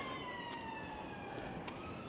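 Faint ambulance siren wailing: a slow falling tone that bottoms out and starts to rise again near the end.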